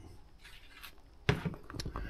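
Faint background, then a sharp knock about two-thirds of the way in, followed by a few lighter clicks and rustles: handling noise as the camera is picked up and swung around.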